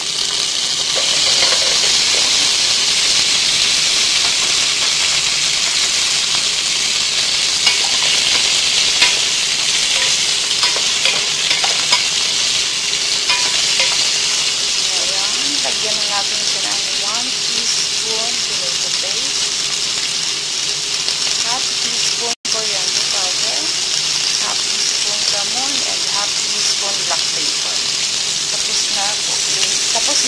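Chopped tomato, carrot and potato sizzling in hot oil with sautéed garlic and onion, stirred with a wooden spoon. The sizzle jumps up as the vegetables go in and then runs steadily, with a few light spoon knocks and scattered small pops. It breaks off for an instant about two-thirds of the way through.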